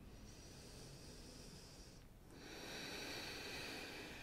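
A person breathing slowly and deeply: two long, soft breath sounds with a short pause between them, the second a little louder. It is paced yoga breathing while holding a pose.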